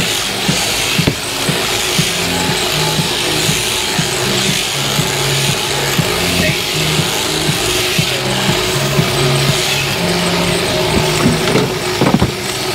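Electric sheep-shearing handpiece running steadily as it clips the fleece off a sheep, a continuous buzz and hiss. Music plays underneath, with low notes stepping between two pitches.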